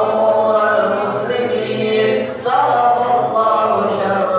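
A gathering of men chanting an Islamic devotional recitation (zikir) together in long held phrases, with a new phrase starting about two and a half seconds in.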